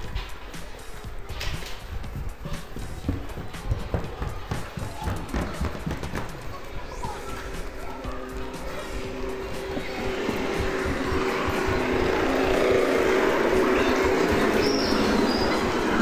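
A marching military band playing, faint at first and louder from about ten seconds in, with held brass-like notes. Under it are low rumble and knocks from the phone being handled against the microphone.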